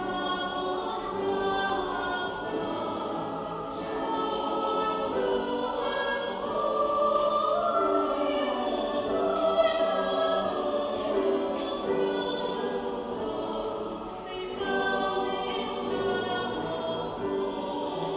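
Mixed choir of men's and women's voices singing together in harmony, with a brief pause between phrases about two-thirds of the way through.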